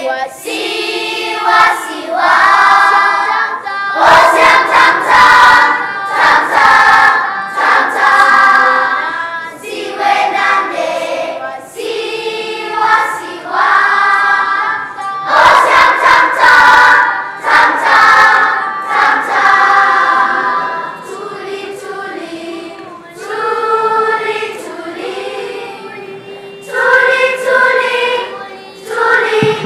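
Children's choir singing, phrase after phrase, with a softer stretch about three-quarters of the way through.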